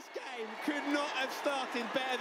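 Football match TV commentary playing back at low level: a man's voice talking over steady stadium crowd noise.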